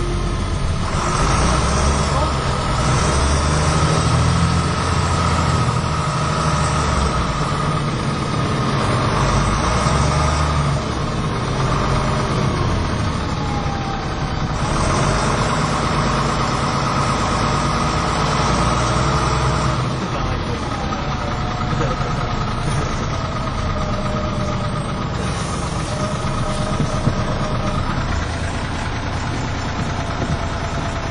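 On board a MAN 18.220LF single-decker bus under way: the diesel engine and drivetrain run steadily, swelling and easing with the driving. A steady high whine sits over the engine for most of the first twenty seconds, then fades.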